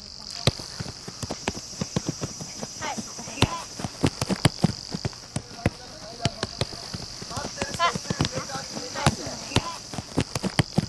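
Soccer ball being kicked and trapped in a first-touch passing drill: many short, sharp knocks of foot on ball at an irregular pace, with a steady high-pitched hum behind them.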